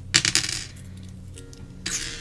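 Small metal charms clinking as they are handled for a charm casting: a few quick clinks at the start and one more near the end, over faint background music.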